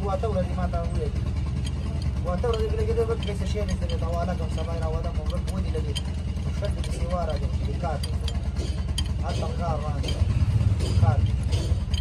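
People talking on and off over a steady low mechanical rumble, with a few faint metallic clicks from a spanner working on the hub bolts.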